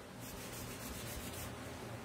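Faint, steady rubbing of a cloth wipe across a sticky ink mat as ink is wiped off it, over a low room hum.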